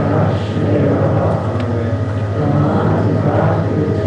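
A congregation singing a prayer together, many voices blended, over a steady low hum.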